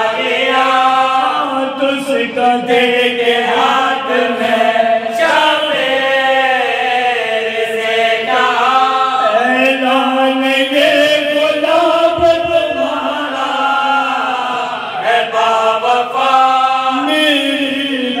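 Several men chanting an Urdu marsiya, a Shia mourning elegy, together in long melodic vocal lines without instruments. One voice leads on the microphone and the others join in.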